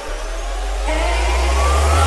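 Sped-up hardstyle dance track in an instrumental build-up: a held bass note under a noise sweep, with synth risers gliding upward in pitch, a new one climbing from about a second in.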